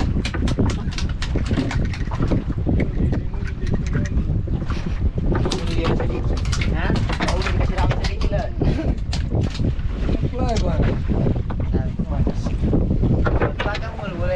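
Wind rumbling steadily on the microphone aboard a small boat at sea, with scattered clicks and short bits of voices.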